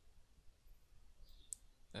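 Near silence with a couple of faint computer mouse clicks in the second half.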